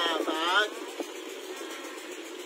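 A voice chanting a melodic phrase with smooth gliding pitch, ending about half a second in. After it comes a steady background noise with a single click about a second in.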